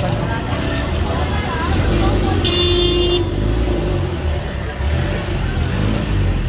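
Busy street traffic: engines of motor tricycles and other vehicles running in slow traffic. A short horn toot lasting under a second sounds about two and a half seconds in.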